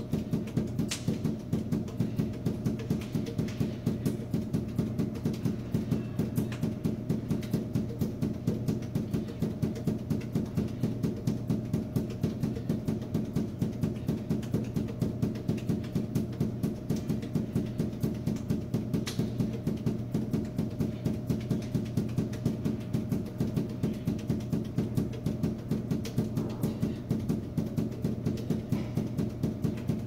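Five balls force-bounced off a hard floor in juggling, an even rhythm of several thuds a second, over a steady low hum.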